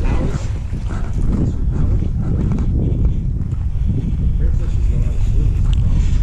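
Wind buffeting the microphone in a loud, uneven low rumble, with faint voices of people talking in the background.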